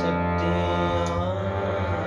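Harmonium playing sustained reed notes and chords over a steady drone.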